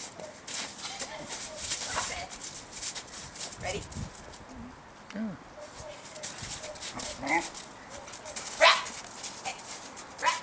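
Dog whining and giving a few short barks, with the loudest bark near the end, as it waits eagerly to be sent.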